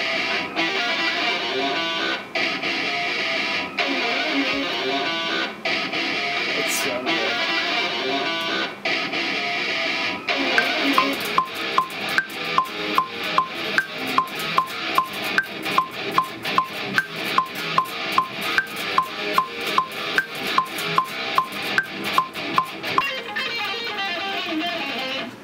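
Electric guitar playing metal riffs. About ten seconds in, a metronome click joins, about two and a half clicks a second, with a higher accented click every fourth beat.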